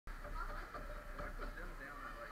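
Distant, indistinct voices calling out across an indoor ice rink, over a low steady hum.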